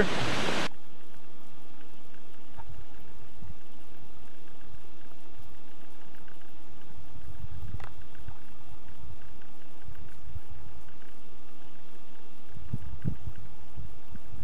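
Steady, even hiss with a few faint steady hum tones, beginning abruptly less than a second in.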